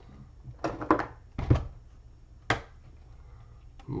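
A trading card being handled and fitted into a rigid clear plastic card holder: about four sharp plastic clicks and taps in the first two and a half seconds, with light sliding and rustling between them.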